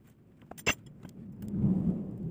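Durian husk and fruit being handled on a cloth: one sharp click a little over half a second in, a few light clicks, then a louder rustling scrape near the end as a whole spiky durian is shifted and a knife is set into its husk.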